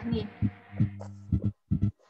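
A steady low hum with a faint hiss fades out after about a second and a half, with several short low thuds through it and a brief spoken word at the start.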